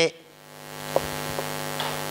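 Steady electrical mains hum, a stack of steady tones, swelling up over the first second once the voice stops and then holding level, with two faint clicks near the middle.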